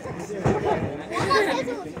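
Several voices talking over each other, with a man calling out "Vamos" near the end.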